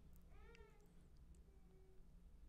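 Near silence broken by one faint, short, high-pitched cry that rises and falls, lasting under half a second, about half a second in.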